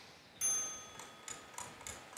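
Game-show countdown timer sound effect: a bright chime rings out about half a second in and fades, then a clock ticks steadily about three times a second, marking the start of the timed round.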